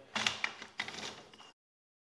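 An 80/20 aluminum extrusion frame being handled, with metal parts sliding and knocking together in a few irregular strokes; the sound lasts about a second and a half and cuts off suddenly.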